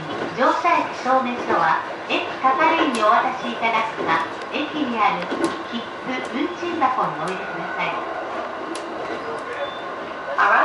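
Recorded on-board passenger announcement, a voice in Japanese, playing over the steady running noise of an E531 series electric train.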